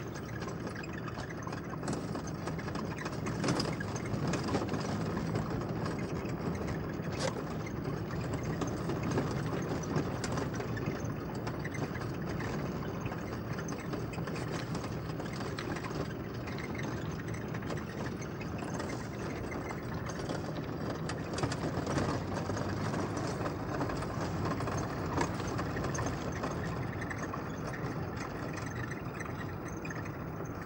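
Car engine running and road noise heard from inside the cabin while driving, a steady hum with a few light clicks or rattles in the first several seconds.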